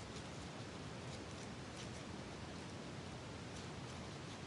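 Faint steady hiss with a few soft, brief rustles of a paper rosebud and paper flowers being pressed and adjusted between fingers.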